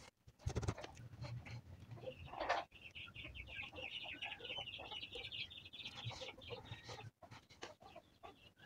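Faint bird calls: a quick run of high, rapidly repeated chirps lasting about four seconds, starting near the third second, over a low hum and a few soft handling clicks.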